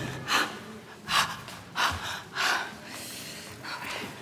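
A person breathing hard in four short, audible breaths, about two thirds of a second apart.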